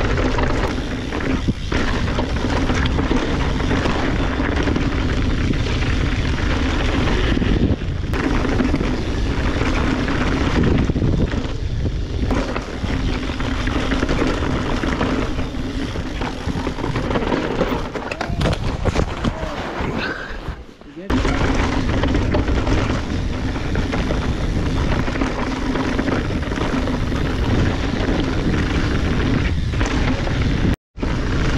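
Wind noise on an action camera's microphone and mountain bike tyres rolling and rattling over a dirt trail at speed, with a brief drop in the noise about two-thirds of the way through.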